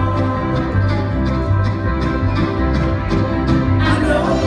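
Live bluegrass string band playing: banjo, acoustic guitars and fiddle over an upright bass that moves to a new note about twice a second.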